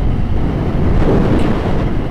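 Wind buffeting an action camera's microphone while a motorcycle rides at road speed: a steady, loud low rumble with the bike's running noise underneath.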